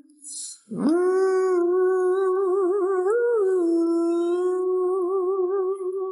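Isolated male lead vocal with no backing track: a quick breath, then one long wordless sung note that scoops up into pitch about a second in and is held with vibrato. The note lifts briefly a little higher around three seconds in.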